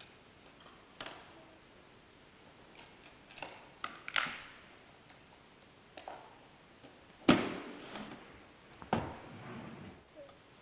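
Scattered clicks and knocks from handling a saxophone and the accessories in its hard case as it is assembled: several short sharp knocks, the loudest about seven seconds in and another about nine seconds in.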